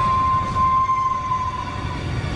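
Dark ambient soundtrack: a deep steady rumble under one held high tone that dips slightly in pitch near the end.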